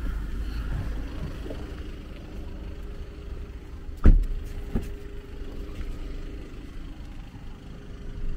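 A 2017 Volkswagen Golf's door shut with one heavy thud about four seconds in, followed by a lighter knock, over a low steady rumble.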